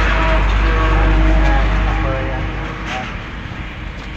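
Several people's voices talking over a heavy low rumble, which eases off about three seconds in.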